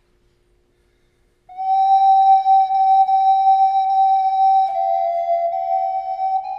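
Native American flute entering after a second and a half of quiet with one long held note, which steps down slightly a little past the middle and is held again.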